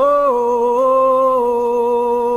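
A man's voice singing an aboio, the vaqueiro's cattle call: one long drawn-out vowel held on a steady note, with small shifts up and down in pitch.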